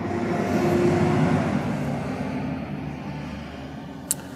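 A fire engine driving past, its engine and road noise loudest about a second in and then slowly fading away.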